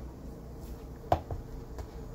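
A spoon stirring a dry flour, vegetable and saltfish mix in a plastic bowl: a few soft knocks and scrapes against the bowl, the sharpest about a second in.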